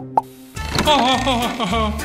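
A short cartoon 'plop' sound effect, then a child giggling over light background children's music.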